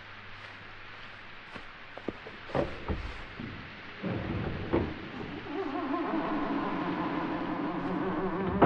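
Radio-play sound effects of entering a barn: a few sharp knocks and a scraping noise, then a sustained music cue comes in about halfway through and holds.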